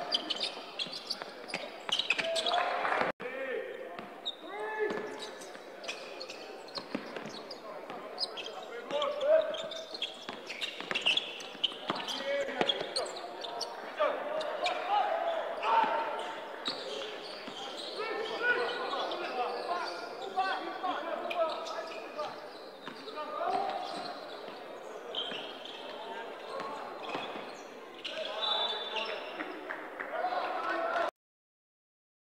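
Basketball game sound in a sports hall: a ball dribbling on the hardwood court in short sharp bounces, with voices over it.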